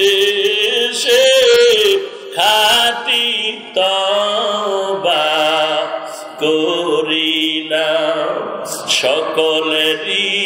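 A man's voice chanting a Bangla-Arabic supplication (munajat) in a drawn-out melodic style, holding long notes that waver, in phrases that break every second or two.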